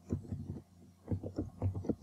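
Computer keyboard keystrokes picked up as a quick series of soft, low thuds in two short runs.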